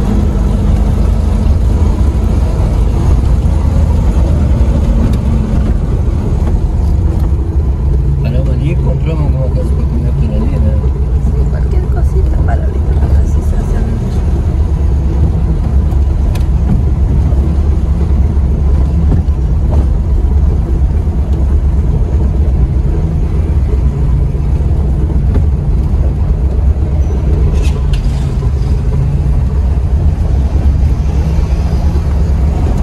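Lada Niva's engine and road noise heard from inside the cabin while driving, a steady low drone that holds an even level.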